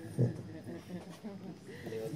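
A dog gives one short bark about a fifth of a second in, followed by the faint murmur of people talking.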